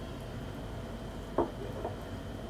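Two soft, short knocks about half a second apart, the first louder, over a steady low hum.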